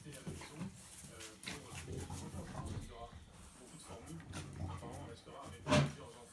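A German shepherd and a small dog play-fighting, with short grunting and whining vocalizations throughout and a sharper, louder sound near the end.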